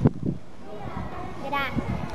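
Young girls' voices and low chatter from a group of small children, with one short high-pitched child's vocal about one and a half seconds in and a brief knock at the very start.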